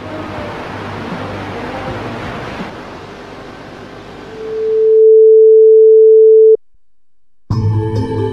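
Television static hiss, followed by a loud steady test-card tone that swells in about four seconds in and cuts off abruptly. After a short lull, music starts near the end.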